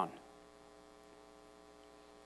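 Near silence with a faint, steady electrical hum made of several even tones.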